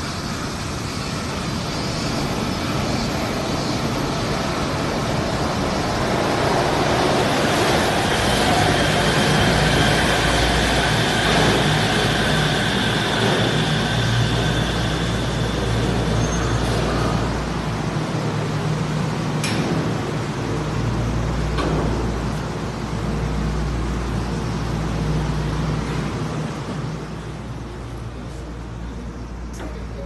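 Suspended monorail train pulling into the station: running noise with a faint steady whine that builds to a peak about ten seconds in, then eases as the train slows and stands. There is a single sharp click about two-thirds of the way through.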